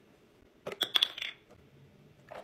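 Glass clinking on a glass Ball mason jar of coffee and ice: a quick run of sharp clinks with a bright ring, about a second in.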